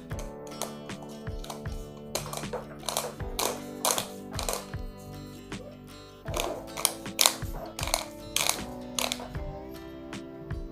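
Plastic cable-clamp end cap of a Legrand P17 three-phase plug being twisted tight by hand, making a series of sharp ratchet-like clicks about twice a second with a short pause midway as it locks onto the cable. Steady background music plays underneath.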